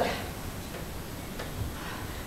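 Quiet room tone in a hall, with a few faint ticks and a small soft thump between a woman's spoken lines.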